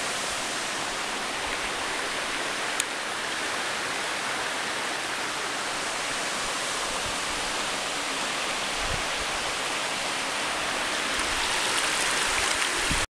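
Steady rush of water pouring over the waterfall's rocky lip, growing a little louder near the end, with one sharp click about three seconds in.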